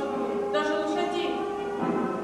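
A choir singing slow, sustained notes, one chord held for most of the time before it changes near the end.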